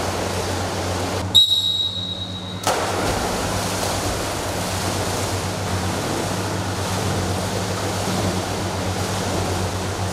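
A swimmer's overarm strokes splashing in a pool, a steady wash of water noise over a low hum. About a second in, a sudden high steady tone sounds for about a second and a half while the water noise briefly drops away.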